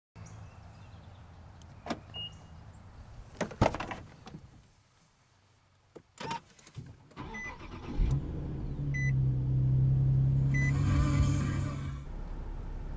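Clicks and knocks of the door being opened and shut on a 2009 Nissan 370Z, then its 3.7-litre V6 push-button started: the starter cranks about seven seconds in, the engine catches about a second later and settles into a steady idle. A few short electronic beeps sound during the start-up.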